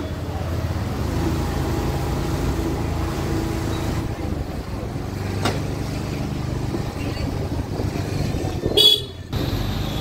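Street traffic: motor scooters and motorbikes running along a narrow lane with a steady low engine rumble, and a short loud honk about a second before the end.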